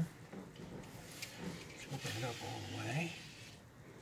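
A new seat belt's webbing and metal fittings being handled, with a couple of light clicks about one and two seconds in, under a low wordless voice.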